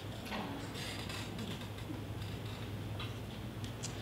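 Quiet hall with a steady low hum and a few faint clicks and taps from handling at the lectern.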